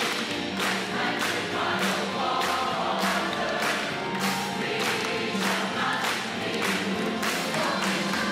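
Background music with a choir singing over a steady beat.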